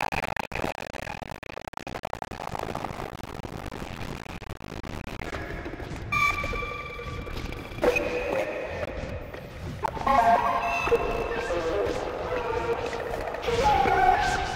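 Experimental electronic synthesizer music: a noisy, textured drone, with held high tones coming in about six seconds in, then shifting into denser clusters of pitched tones that get louder toward the end.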